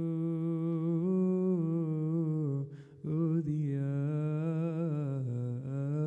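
A man's voice singing a slow, melismatic Coptic liturgical chant, holding long notes that glide gently from pitch to pitch, with a brief breath about halfway through.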